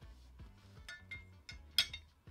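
Light clicks and clinks of the TV stand's black mounting bracket being handled and set against its metal leg, the sharpest click near the end.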